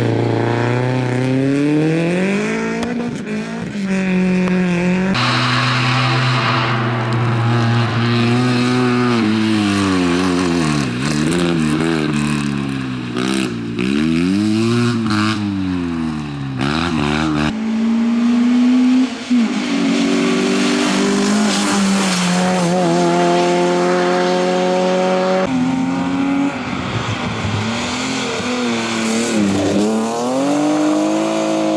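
Rally cars driven hard through a stage, one after another: engines revving up and dropping back over and over with gear changes and lifts for corners, with some tyre squeal.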